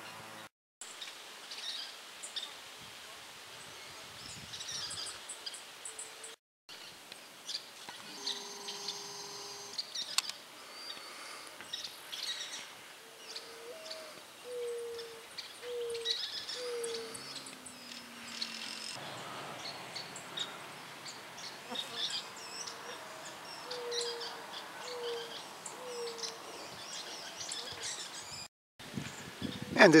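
Outdoor birdsong: scattered high chirps, and twice a low cooing call of four or five short notes, the second note higher than the rest.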